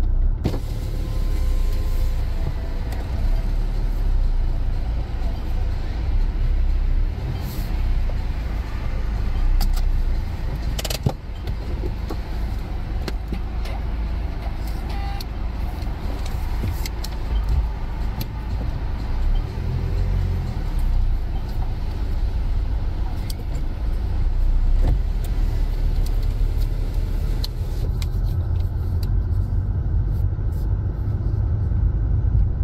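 Car driving at low speed, heard from inside the cabin: a steady low rumble of engine and tyre noise, with a few brief clicks or knocks, the clearest about eleven seconds in.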